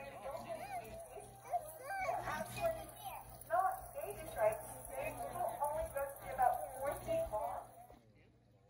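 Indistinct voices, children's among them, with some music underneath; the sound cuts off abruptly at the end.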